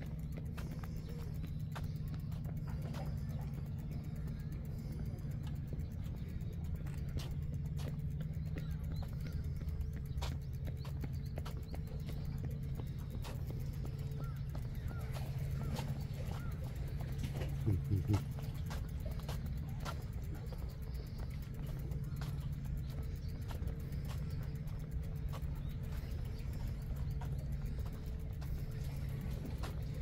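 Bicycle riding over concrete: a steady low hum with frequent light clicks and rattles, and one brief louder pitched sound a little past halfway.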